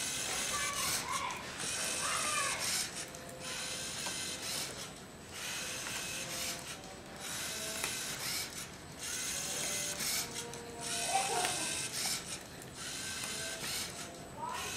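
Lego Mindstorms NXT card-dealing robot's servo motors and gears whirring in repeated bursts with short pauses between them, as it turns and deals cards one by one.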